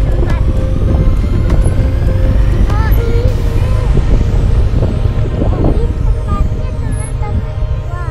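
Motorcycle engine running while riding a bumpy dirt track, with heavy wind rumble on the microphone.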